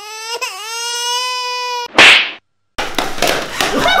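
A comic crying-wail sound effect: one high, steady wailing cry lasting nearly two seconds over dead silence. It is followed by a short, very loud noisy burst and a brief cut to silence, then room noise and a little laughter near the end.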